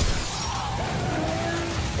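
A crash with breaking, shattering glass, a dense noisy burst that starts suddenly, mixed over music.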